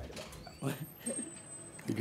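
Low, murmured speech, a quiet aside between two people at a table microphone. A faint thin high squeak sounds for about half a second midway.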